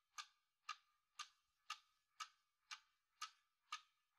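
A clock ticking evenly, about two faint ticks a second.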